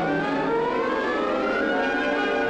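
Orchestral film score: several notes glide upward together over about a second and a half, siren-like, then hold on a sustained chord.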